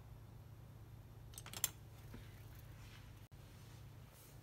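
Faint room tone with a steady low hum. About a second and a half in there is a brief cluster of small clicks, and one fainter click follows.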